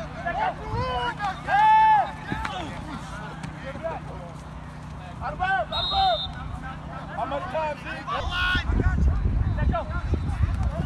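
Players and sideline voices shouting calls across a football field, one long loud shout about two seconds in. A short, high, steady blast of a referee's whistle about six seconds in. A low rumble comes in near the end.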